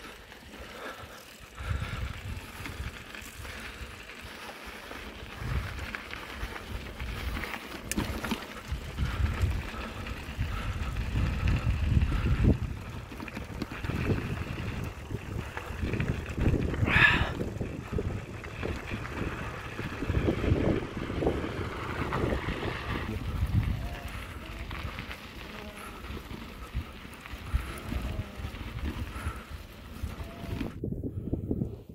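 Wind buffeting the microphone outdoors, a low rumble that rises and falls in gusts. There is one short high-pitched sound about 17 seconds in.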